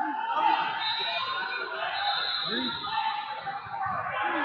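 Overlapping voices of several people talking and calling out in a large hall, with no one voice standing out.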